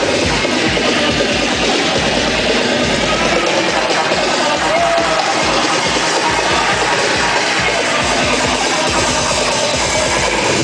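Loud electronic dance music with a steady kick-drum beat, played by a DJ over a PA sound system and recorded close to the speakers.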